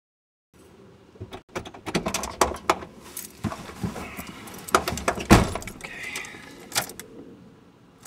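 Car keys jangling and clicking at the ignition, mixed with knocks and rustling as a driver settles into the seat, with one heavy thump about five seconds in.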